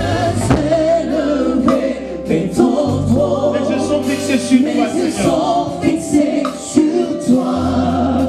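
Live gospel worship music: a man sings into a microphone with backing voices over keyboards, sustained bass notes and a drum kit.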